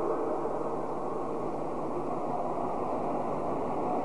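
Steady, even background noise with a faint low hum: the room tone of a hall recording during a pause in speech.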